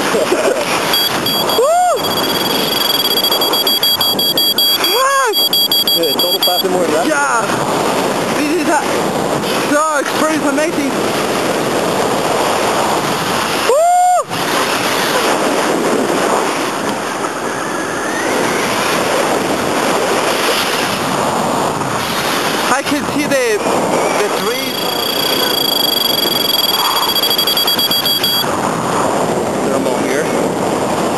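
Wind rushing over the microphone during a tandem paragliding flight just after launch, a steady loud rush with gusts that swell and fade. Twice a pair of thin steady high tones sounds for a few seconds.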